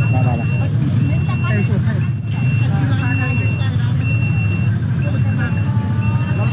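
An electronic beeper sounds about once a second, each beep about half a second long. Under it runs a steady low engine rumble, and people are talking throughout.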